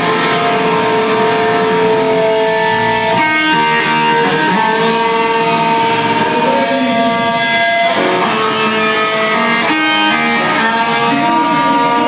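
Hardcore band playing live, led by loud electric guitar chords that are held for a few seconds and change to new chords about three, eight and ten seconds in.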